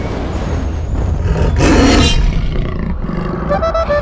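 A deep rumbling sound effect with a big cat's roar about two seconds in. Music begins near the end.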